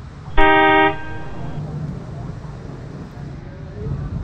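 A vehicle horn honks once, about half a second long and steady in pitch, over a low background rumble.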